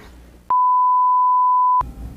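A single edited-in bleep: a pure, steady 1 kHz sine tone about a second and a quarter long that starts and stops abruptly, with dead silence on either side of it.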